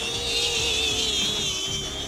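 DJI Flip drone hovering close by, its propellers giving a steady hum under a higher, wavering motor whine that swells slightly and then eases.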